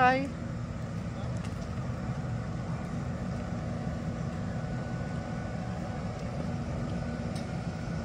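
Ford Expedition SUV creeping along at low speed while towing a light, empty trailer frame: a steady low engine and road rumble.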